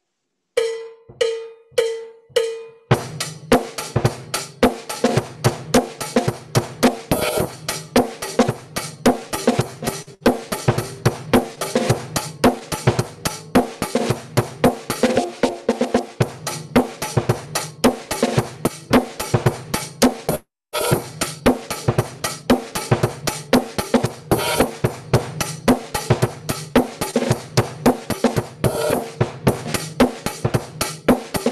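Drum beat for dancing: four evenly spaced count-in strokes, then a steady drum-kit rhythm with snare and bass drum that runs on. The sound cuts out for a moment about twenty seconds in.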